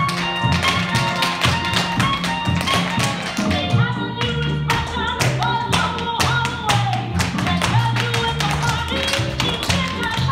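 Tap shoes striking a wooden floor in quick, rhythmic runs of taps over recorded music with a steady bass line.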